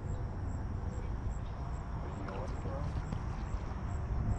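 Steady low rumble of wind on the microphone, with a faint high tick about twice a second and a faint voice briefly partway through.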